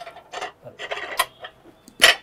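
Light knocks and clinks of dishes and utensils being handled on a wooden kitchen counter: several short, separate taps.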